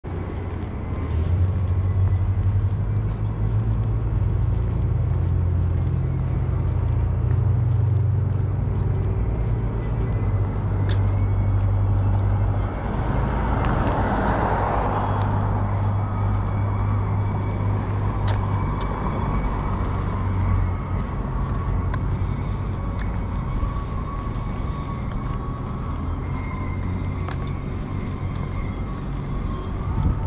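Outdoor street noise: a steady low rumble of road traffic, with a vehicle passing and swelling up about halfway through. Scattered light clicks.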